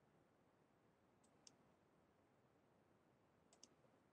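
Near silence: room tone with two faint clicks, one about a second and a half in and one near the end.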